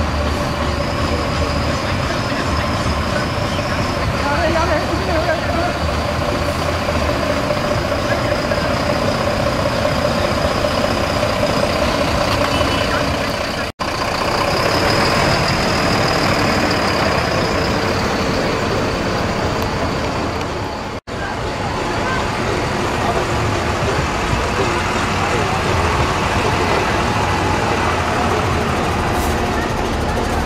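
Buses idling in a line, a steady engine drone with a high, thin whine over it, mixed with people's voices; the sound drops out briefly twice.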